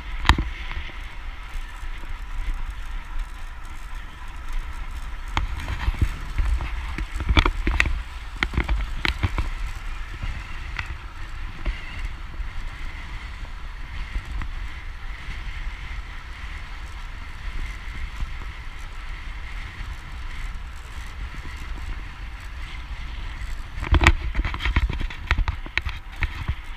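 Road bike ridden at speed on a tarmac path: wind rushing over the microphone and tyre noise on the road, with a few sharp knocks, most of them about 7 to 9 seconds in and again near the end.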